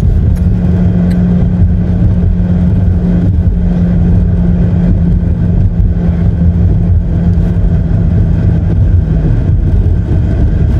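Road and engine noise inside a moving car's cabin: a steady low rumble with a steady hum that fades away shortly before the end.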